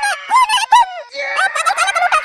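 A sped-up, very high-pitched cartoon character's voice chattering rapidly in quick broken phrases, with a short pause about a second in.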